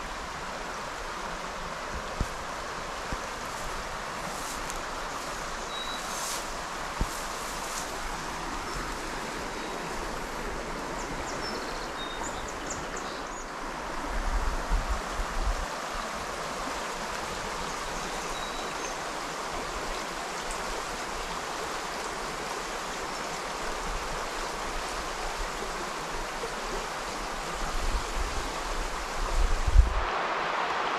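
River water flowing steadily, a constant rushing hiss. Low rumbles, like wind buffeting the microphone, come about halfway through and again near the end.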